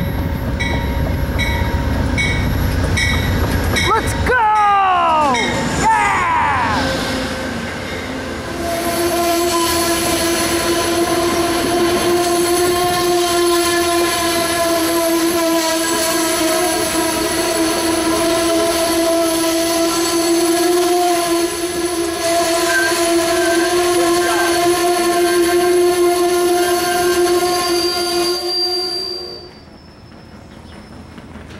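Amtrak Genesis locomotive 822 and its Northeast Regional train pulling into a station: the locomotive rumbles past with a regular ringing about twice a second, then a few falling squeals, then the coaches' brakes squeal in one steady tone as the train slows. The squeal cuts off just before the end as the train stops.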